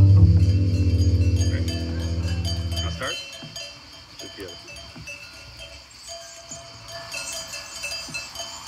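A low held note from bass clarinet and double bass stops about three seconds in. After it, sheep bells clink quietly and keep on, with a sheep bleating.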